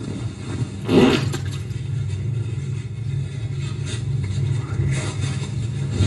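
A steady low rumble, with a brief louder scrape-like noise about a second in.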